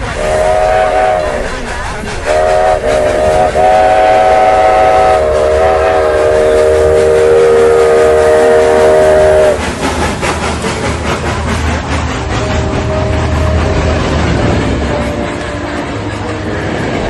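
A train whistle sounding a chord of several notes in two blasts, a short one and then a long one of about seven seconds, followed by a fainter blast over the low rumble and clatter of a moving train.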